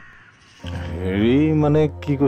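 Quiet for about half a second, then a man's long drawn-out voice held on one wavering pitch over a steady low hum of background music.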